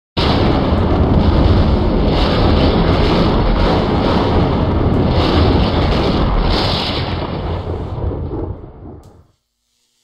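Loud, continuous rumbling and crackling sound effect that starts abruptly, fades away over its last two seconds and stops about nine seconds in.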